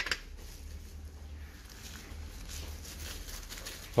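Soft paper rustling as small chrome-plated shower fittings are unwrapped from thin white wrapping paper by hand, with a light click at the start as a metal cover plate is set down on the table.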